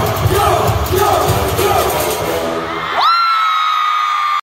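Live concert music with a heavy bass beat and a cheering crowd, recorded from among the audience. About three seconds in the music cuts off abruptly and a single sustained high-pitched note, rising sharply at its start, holds to the end.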